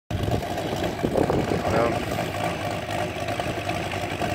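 Seidel 250-7 B seven-cylinder radial model-aircraft engine idling steadily on the ground, turning a large wooden propeller.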